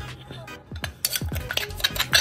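Wooden pestle pounding dried chili and garlic in a mortar, with a quick run of knocks and clinks in the second half. Background music with a deep, falling bass beat plays under it.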